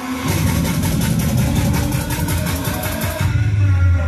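Music with a heavy bass line and a rapid, even beat, played loud through a Polytron PAS 68-B active speaker during a sound test. The bass comes in just after the start and deepens near the end.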